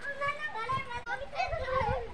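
Children's high-pitched voices calling out and chattering as they play.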